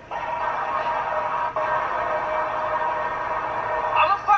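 An eerie, steady drone of several held tones, with a short break about a second and a half in.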